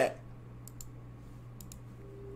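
Computer mouse clicking: a quick pair of clicks well into the first second, then three more about a second later, over a faint steady low hum.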